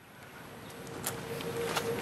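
Faint outdoor background noise fading in after a moment of silence, with a steady hum starting about a second in and a couple of faint ticks.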